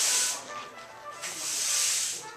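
Two bursts of high hiss, each about a second long, one at the start and one just past the middle, over faint background music.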